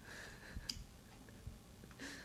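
Faint clicks and ticks as a jelly jar is handled and its screw lid twisted open, with one sharper click shortly after half a second in.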